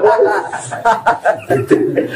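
Chuckling laughter in short broken bursts, mixed with snatches of speech.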